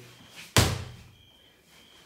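One heavy thud as a medicine ball hits the floor about half a second in, dying away quickly.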